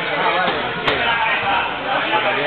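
People talking throughout in an echoing gym, with one sharp smack a little under a second in: a blow landing during full-contact sparring.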